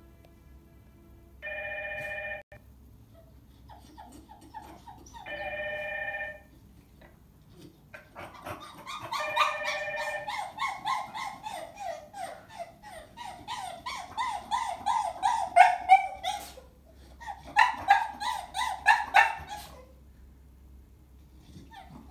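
Apartment intercom ringing in steady chime bursts about a second long: twice, then a third time about nine seconds in. A Chow Chow dog answers with a long run of rapid, high yelping whines that fall in pitch, from about eight seconds until shortly before the end, with a brief pause partway through.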